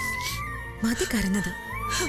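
Background music with a held, steady high tone that shifts slightly in pitch. About a second in, a woman speaks briefly over it.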